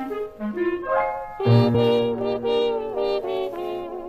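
A 1930s dance orchestra playing an instrumental passage in a 1934 radio broadcast recording. A single melodic line plays for about the first second and a half, then the full band comes in with sustained chords over a bass note.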